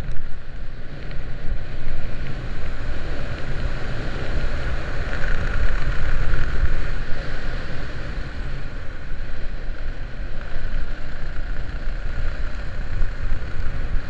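Steady wind rushing and buffeting over a helmet camera's microphone during flight under an open sport parachute canopy, a Stiletto 150.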